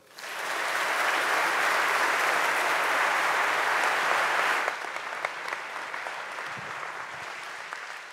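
A large seated audience applauding a speech. The clapping builds at once into a dense, steady applause, then falls noticeably softer a little past halfway and continues at the lower level.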